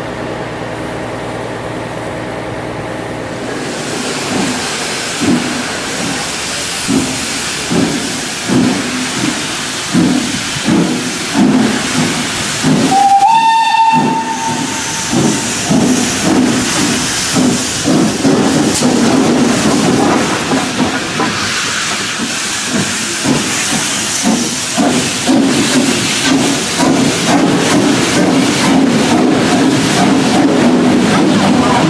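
Steam locomotive No.85 Merlin, a three-cylinder compound 4-4-0, pulling away with its train. Exhaust beats start about four seconds in and quicken as it gathers speed, with steam hissing. About halfway through it gives one short blast on its whistle.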